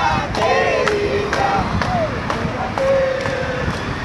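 Drawn-out, sing-song voice sounds: long held and gliding tones rather than ordinary talk. Under them runs a steady rush of wind and traffic noise.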